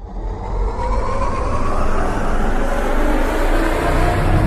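Loud rumbling whoosh-like sound effect with a deep bass drone, swelling up in the first half-second and then holding steady, as a synthetic intro sound for an animated title logo.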